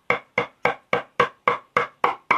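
Wood chisel struck in a steady run of quick taps with a two-headed soft-face mallet, about four blows a second, chipping out a pre-cut recess in a wooden bass guitar body.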